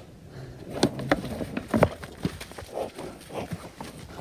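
Two yaks fighting head to head, with a run of sharp knocks and clacks from about a second in, the loudest close together near the two-second mark.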